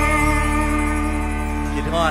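Live band music: a long held chord sustained without drums, as at the close of a song, with a short sliding note near the end.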